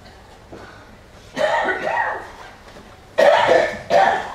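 A person coughing: a short coughing bout about a second and a half in, and another just before the end.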